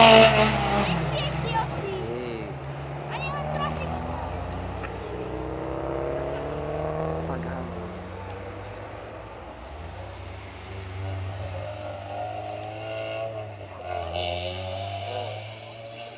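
Hill-climb race cars accelerating out of a tight hairpin, engines revving and rising in pitch as they pull away up the hill. The first is loudest right at the start, and another car swells up loudly about fourteen seconds in.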